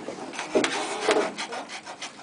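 A wooden clog being hollowed out by hand with a long-handled cutting tool: the blade scrapes and rasps through the wood in several separate strokes, about two a second.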